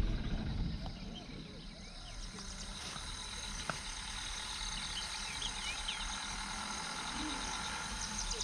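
Open-country ambience: a steady high insect drone with scattered faint bird chirps and faint distant voices, and a single sharp click a little before the middle.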